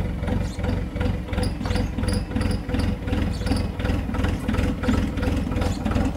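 An engine idling steadily, with an even low throb and a steady higher tone riding over it.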